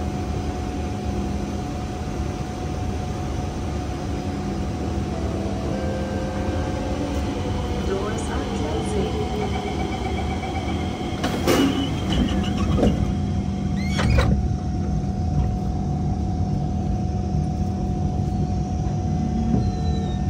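Running sound of a Kawasaki C151 metro train heard from inside: a steady rumbling hum with a constant drone, and falling motor tones midway as the train slows. Two short sharp noises come about eleven and fourteen seconds in.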